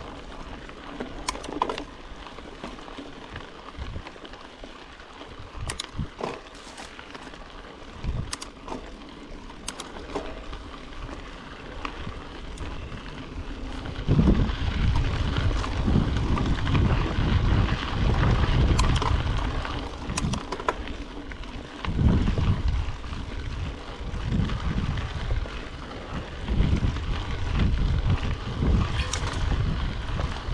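Yeti SB5 mountain bike riding down a dry dirt singletrack: tyres running over dirt and fallen leaves, with scattered sharp knocks and rattles from the bike. About halfway through, a low rumble of wind on the camera microphone comes in much louder, in gusts.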